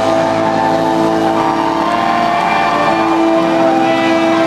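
Live rock band holding sustained, ringing electric guitar and bass chords, the held notes changing pitch a couple of times.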